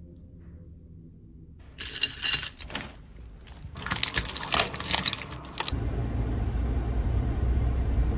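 A bunch of keys jangling and a key working a door deadbolt, in two bursts about two and four seconds in. Then a steady low rumble of a car, heard from inside the cabin.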